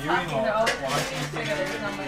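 Ceramic dinner plates being handled at a table, with a couple of sharp clinks near the middle, over voices.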